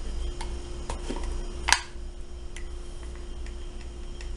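A plastic spoon tapping and clicking against a glass pan while stirring a hot liquid: scattered light taps, with one sharper knock a little before the middle. A faint steady hum runs underneath.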